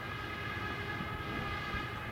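A steady horn-like tone made of several pitches held together, with a single sharp knock near the end, fitting a cricket bat striking the ball.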